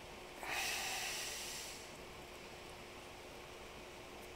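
A person's sharp breath out through the nose: one hiss that starts about half a second in and fades away over about a second and a half.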